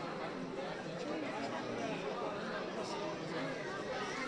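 Crowd chatter: many people talking at once, a steady babble of overlapping voices.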